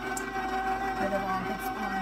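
KitchenAid stand mixer running on its slow stir setting, a steady motor whine under the load of a thick cookie dough.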